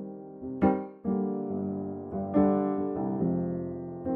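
Instrumental hip-hop beat opening on electric piano chords, each struck and left to ring and fade, with a new chord about every second and no drums yet.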